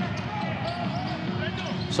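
A basketball being dribbled on a hardwood court during live play, a few faint strikes over the steady background noise of the arena.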